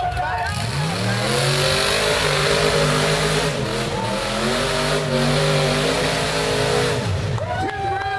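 Rock bouncer buggy's engine revving hard at full throttle on a steep rock hill climb: it climbs in pitch about a second in, holds at high revs for several seconds, then drops off near the end.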